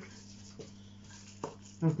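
Quiet handling of a small plastic Air Wick automatic spray dispenser as it is put back together, with two small clicks, over a steady low electrical hum.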